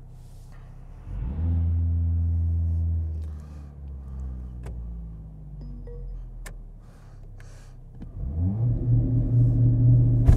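Mercedes-AMG CLA45 S's turbocharged 2.0-litre four-cylinder heard from inside the cabin. About a second in, the revs jump up and are held steady for about two seconds, then sink back to a lower steady note. Near the end the revs climb again as a launch-control start begins.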